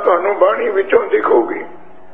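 A man speaking in Punjabi, delivering a religious discourse, who breaks off about a second and a half in; a faint steady low hum is left under the pause.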